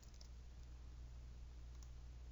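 Near silence: a steady low hum with a few faint clicks from a computer keyboard and mouse, once near the start and once near the end.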